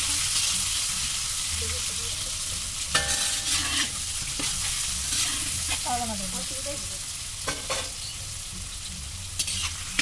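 Food sizzling and frying in a large aluminium kadai over a wood fire while it is stirred with a long metal ladle, a steady hiss broken by a few clinks and scrapes of the ladle against the pan.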